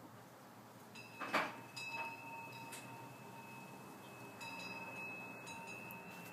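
Wind chimes ringing: a few light strikes about a second in and again later set off clear high tones that hang on for several seconds.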